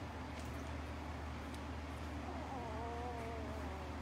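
A young puppy whining once, a thin wavering cry lasting about a second and a half, over a steady low hum.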